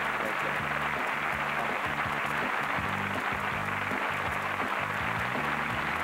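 The show's music playing while a studio audience applauds, the clapping a steady even wash throughout.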